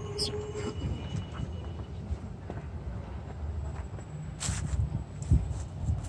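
Low, steady outdoor background rumble with a few soft knocks and clicks, the sharpest about four and a half seconds in and a dull thump just after.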